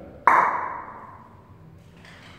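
A single sharp percussive sound about a quarter second in, then a ringing tail that dies away over about a second: the echo of a bare, unfurnished room with no carpet or furniture.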